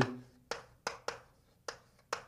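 Chalk writing on a blackboard: four short, sharp taps as the chalk strikes the board to start each stroke of a word.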